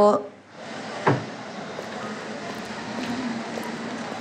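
A single dull thump about a second in, then steady background noise of scene ambience.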